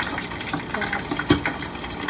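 Pot of water with squash and green beans simmering, bubbling with small pops, and a single sharp knock a little past a second in.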